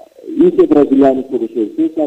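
Speech: a man talking continuously.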